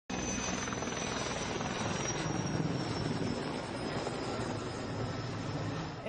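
Sikorsky S-64 Skycrane firefighting helicopter flying close overhead: steady rotor and turbine noise with a thin high whine that drifts slowly down in pitch.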